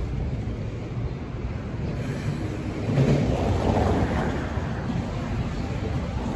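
Outdoor street noise: wind on the microphone over passing traffic, a steady rushing that swells louder about three seconds in.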